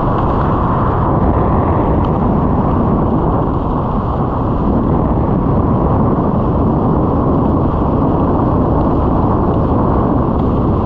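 Airflow rushing over the skydiver's body-mounted camera microphone while descending under an open parachute canopy, a loud, steady wind rumble.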